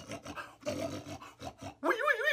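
A man imitating a pig with his voice: rough grunts about halfway through, then wavering, squealing cries starting near the end.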